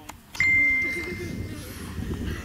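A single clear, high bell-like ding that rings out and fades over about a second and a half, over the murmur of a group of children.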